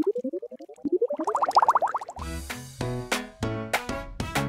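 A cartoon sound effect of quick rising, warbling pitch sweeps that climb higher and come faster. About two seconds in, a bouncy children's music track with a steady beat starts.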